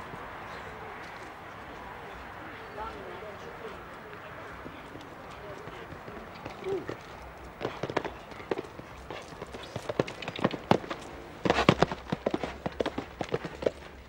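Horse's hooves striking a sand arena at the canter, a series of irregular thuds that get louder and closer in the second half.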